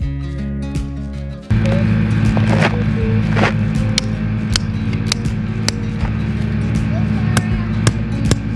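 Sledgehammer blows driving the double steel spike of an electric-netting fence post into hard gravel ground: a series of sharp knocks, a bit under two a second. Background music plays for the first second and a half, then a steady engine drone comes in under the knocks.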